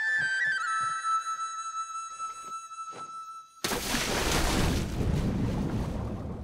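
Film-score flute holding a long note over soft, evenly spaced low drum beats, fading away; about three and a half seconds in, a sudden loud splash into water that turns into a muffled underwater rushing.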